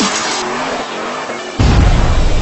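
Tires squealing in a car burnout, mixed with electronic intro music, then a sudden heavy bass hit about a second and a half in.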